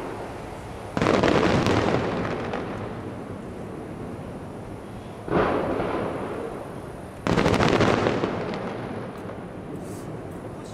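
Aerial firework shells bursting: three booms, about a second in, about five seconds in and just after seven seconds in. Each fades out over a couple of seconds.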